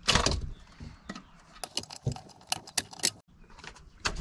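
Plastic wiring-harness connectors clicking and a metal-cased control module rattling as the connectors are unplugged from a car's VSC/ABS computer. A louder clatter opens, then a quick run of sharp clicks follows in the second half.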